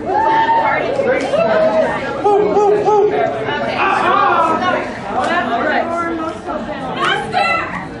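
Overlapping voices chattering and calling out in a large hall, some of them high and sing-song.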